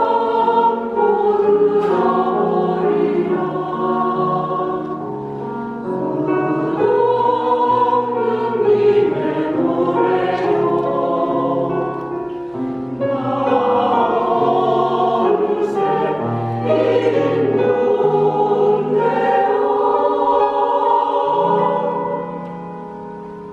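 Mixed choir of women's and men's voices singing a Korean art song in full, held chords that swell and ease in long phrases. A held chord is released at the very end.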